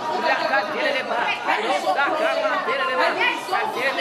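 A woman praying aloud into a microphone, speaking in tongues, with other voices praying at once behind her.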